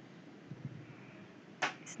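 Faint steady background hiss, then a short sharp click about a second and a half in, followed by a second brief high click just before speech begins.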